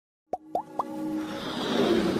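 Intro sound effects for an animated logo: three quick bloop-like pops, each gliding upward in pitch and the third pitched highest, then a swell that builds steadily into electronic music.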